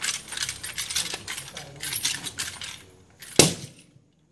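Small wooden hand-held god's sedan chair used for divination, shaken by two bearers: a quick clattering rattle for about two and a half seconds, then one hard knock of the chair on the table near the end.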